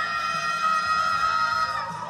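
A man's amplified voice holds one long, high sung note through a microphone for most of the two seconds, fading near the end, over a karaoke backing track.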